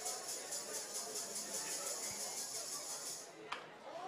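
Faint ballpark ambience under a steady, rapid high-pitched pulsing, about six pulses a second, that cuts off suddenly near the end, followed by a single click.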